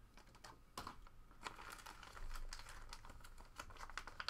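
Faint, irregular light clicks and crackles of a yellow plastic mailer being handled, coming thicker from about a second and a half in as fingers work at its sealed flap.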